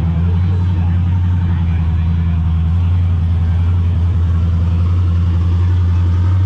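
Drag-racing car engines idling at the starting line: a loud, steady low drone.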